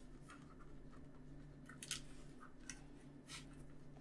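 Faint handling sounds: thin model wires rustling and giving a few soft ticks against the plastic interior of a scale model as they are pushed through a small hole, over a low steady room hum.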